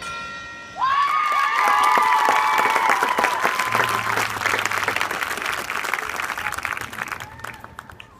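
The last ringing notes of the mallet percussion die away, then about a second in an audience breaks into clapping and cheering, with whoops over the clapping. The applause fades near the end.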